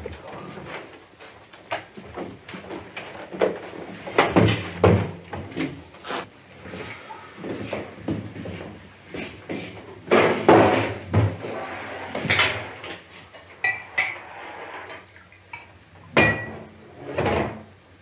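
Kitchen handling clatter: irregular knocks and bumps as a glass bottle and drinking glass are picked up and set down, with a few short ringing glass clinks in the last few seconds.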